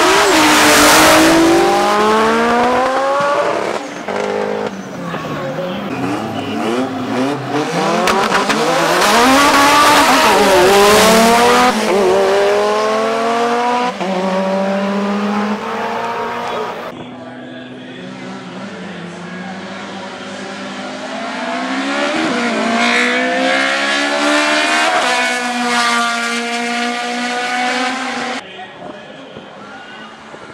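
Drag cars launching hard off the line with a loud burst at the start, their engine revs climbing and falling back in steps as they shift up through the gears down the strip. After a break about halfway, another hard run is heard, revs again rising through several gears before fading near the end.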